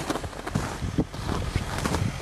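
Footsteps crunching in dry snow, an irregular run of crunches, with wind noise on the microphone.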